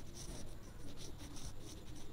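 Whiteboard marker rubbing across a whiteboard in a series of short, quiet strokes as letters are written.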